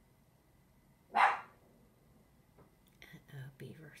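A small dog barks once, a single sharp bark about a second in.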